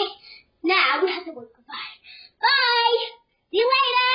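A young boy's voice singing wordless, drawn-out notes, several in a row with short gaps, the last two long and held with a wavering pitch.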